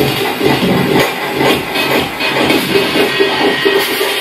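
Live electronic noise music from a DIY sound performance: a dense, busy texture with quick stuttering beats. In the last second a short tone repeats several times a second, and a thin steady high tone comes in.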